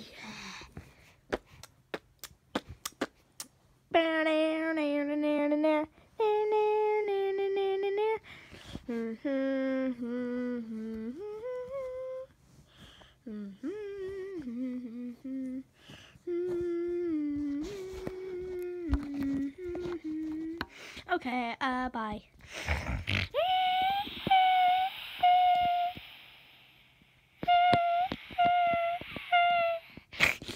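A person humming a wordless tune, holding notes and sliding between them in short phrases, after a few light taps in the opening seconds. Near the end the voice jumps higher into short repeated notes.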